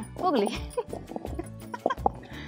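Women laughing and exclaiming over steady background music.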